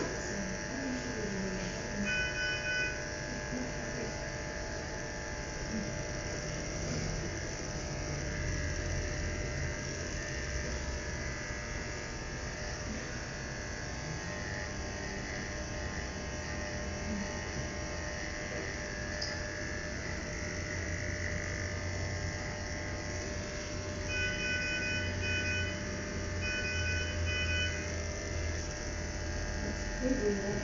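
Electric animal hair clippers buzzing steadily as a tiger's fur is shaved for surgery. An electronic monitor beeps in short rapid series, once about two seconds in and twice near the end.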